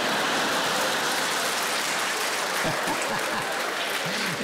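Studio audience applauding, a steady, dense clapping.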